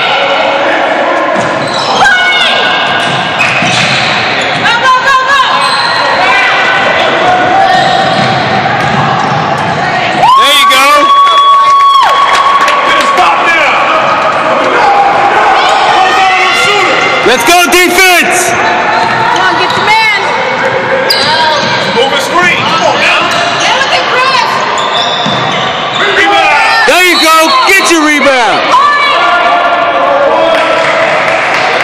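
Sounds of basketball play on a hardwood gym floor: the ball bouncing and sneakers squealing, echoing in a large hall, with voices around the court. A steady tone sounds for about a second and a half about ten seconds in.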